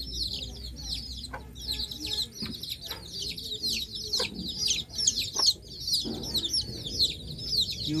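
Many small birds chirping continuously, a dense chorus of short, high, downward-sliding peeps with no pause.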